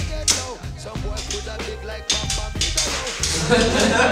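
Hip-hop music with a steady beat and a deep bass line.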